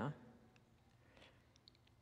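Near silence: room tone, with the tail of a man's spoken word at the start and a few faint, short clicks about a second in and again near the end.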